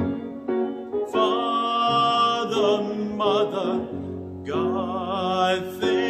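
A man singing a slow solo hymn with piano accompaniment. His long held notes carry a wide vibrato, with a short breath about four and a half seconds in.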